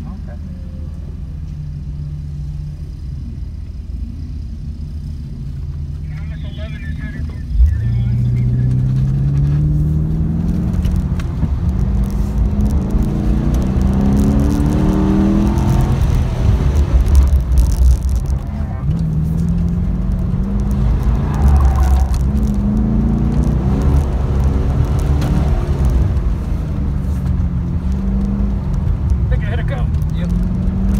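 Pontiac G8's engine heard from inside the cabin, idling, then pulling away sharply in second gear about seven and a half seconds in. It revs up and down repeatedly as the car is driven hard through an autocross course.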